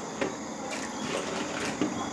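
Water boiling in a steel pot, with a few soft splashes and light clicks as sorrel petals are dropped into it by hand.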